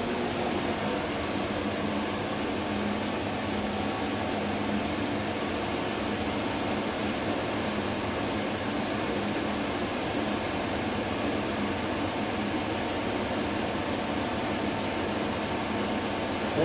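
Blower door fan running steadily at constant speed with its ring A flow ring fitted, depressurizing the house during a five-point blower door test: an even rush of air with a steady low hum.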